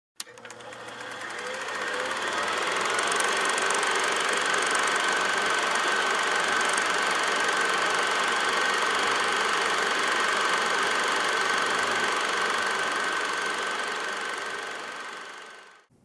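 A machine running steadily, with a thin high whine in it. It fades in over the first few seconds and fades out near the end.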